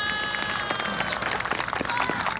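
Audience applauding with scattered hand claps, joined by a steady pitched call held through about the first second.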